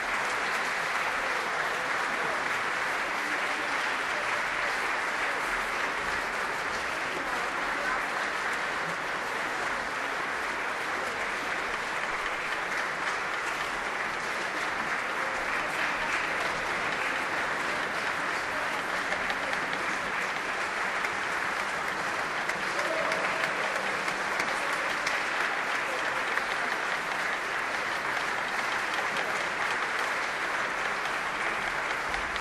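Large audience applauding, a dense and steady clapping that holds without a break.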